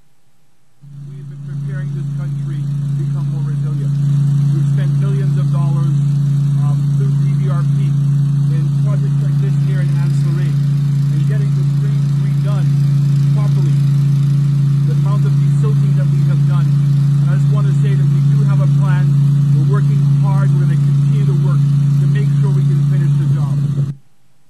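An engine running steadily at constant speed, a loud unbroken low drone that starts about a second in, with a man's voice faintly audible over it.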